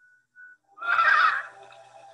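Infant rhesus monkey giving one short, loud, high-pitched cry about a second in, with faint steady tones trailing after it.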